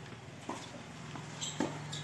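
Tennis ball hit by rackets and bouncing on a hard court during a rally: a few sharp pops, the loudest about one and a half seconds in, with short high squeaks and a steady low hum.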